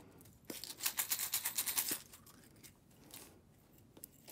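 Homemade plastic-egg shaker with beads inside, shaken hard for about a second and a half, the beads rattling quickly against the plastic shell. The shaking is a test of how this mix of fillings sounds.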